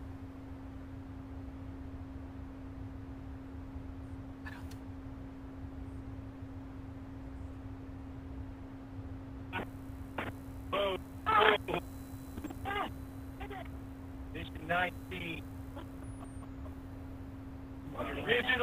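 A steady low hum over low rumbling noise on a narrow, radio-like audio feed. In the second half, short snatches of voices break through.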